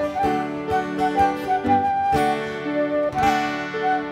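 Live flute playing a melody over a steadily strummed acoustic guitar, an instrumental passage with no singing.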